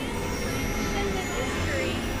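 Dense experimental synthesizer noise collage: a thick rumbling bed under steady high tones, with short gliding pitches sweeping up and down throughout.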